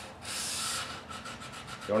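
Fine 400-grit sandpaper rubbed by hand along the edges of a wooden box to round off the sharp edges: one longer scraping stroke, then a run of quick short strokes.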